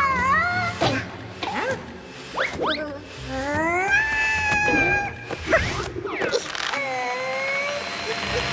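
Cartoon insect characters' wordless, high-pitched vocal sounds, whines and squeals that glide up and down in pitch, over background music, with a few short knocks.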